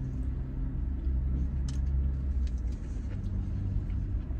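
Parked vehicle's engine idling, heard from inside the cabin as a steady low rumble that swells slightly mid-way, with a few faint clicks of the plastic spoon and cup as he eats.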